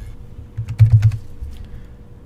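Computer keyboard keys tapped in a short run, typing a number into a field. A low thud near the middle is the loudest sound.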